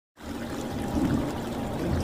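Water pouring and splashing, coming in suddenly just after the start and growing a little louder.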